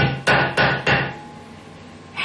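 A jar lid banged against the edge of a marble countertop four times in quick succession, within about a second, to loosen a stuck lid.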